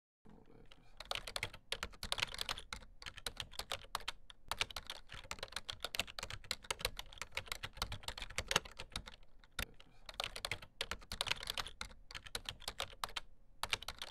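Rapid typing on a computer keyboard: a dense, irregular run of key clicks with a few short pauses, stopping abruptly at the end.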